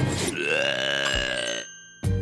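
An old man's cartoon voice gagging in disgust at raw fish: one long, drawn-out retching 'blegh' that fades out about a second and a half in.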